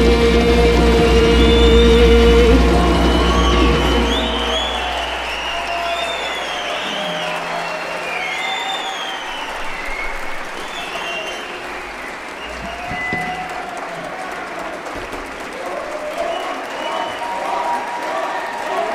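An Arab orchestra holds its final chord, which dies away about four seconds in, and the audience applauds and cheers, with high rising-and-falling calls over the clapping.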